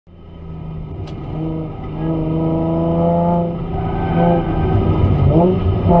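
Turbocharged Nissan 350Z's 3.5-litre V6 heard from inside the cabin under hard acceleration at speed, its pitch climbing, dipping briefly at gear changes and climbing again. The sound fades in at the start.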